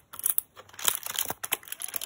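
Cardboard door of a chocolate advent calendar being pried and torn open by fingers: irregular crackling and tearing of card.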